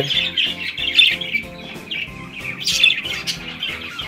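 Budgerigars chirping and squawking continuously and busily, with background music underneath.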